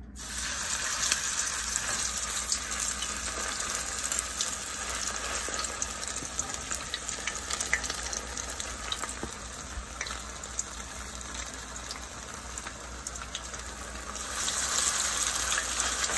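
Salmon patties frying in hot oil in a skillet: a steady sizzle with fine crackles. It starts suddenly and grows louder about two seconds before the end.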